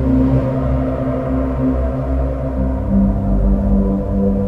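Novation Summit polyphonic synthesizer playing a dark, sustained low pad with held bass notes. The notes shift lower about two-thirds of the way through.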